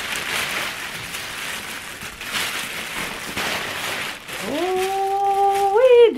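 Thin plastic packaging crinkling and rustling in repeated surges as a wrapped handbag is worked out of a plastic mailer bag. About four and a half seconds in, a woman's voice holds one steady hummed note for about a second and a half, stepping up in pitch at the end.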